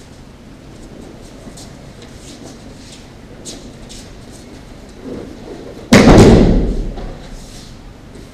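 A body landing in a breakfall on aikido tatami mats after a throw: one loud thud about six seconds in, dying away over about a second in the large hall.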